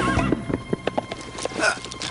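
Horse hooves clopping, then a short, loud horse whinny near the end, with music breaking off at the start.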